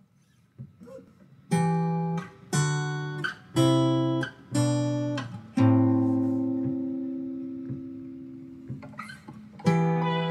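Acoustic guitar playing an intro: strummed chords about one a second, then one chord left to ring and fade for about three seconds before the strumming picks up again near the end.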